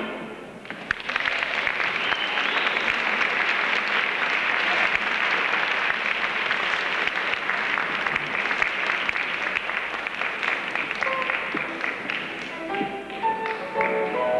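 Audience applauding steadily for about eleven seconds as a traditional jazz number ends. Near the end the band starts playing again.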